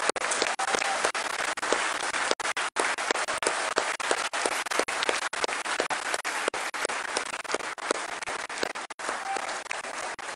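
A large audience applauding: many hands clapping in a dense, steady patter.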